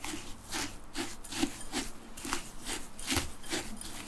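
A spatula stirring and scraping crushed biscuit and walnut crumbs around a glass bowl, in repeated gritty strokes a little over two a second.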